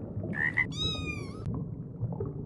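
A short frog croak, then a single cat meow about two-thirds of a second long, slightly falling in pitch. Both are played as sound effects over a low rumbling background.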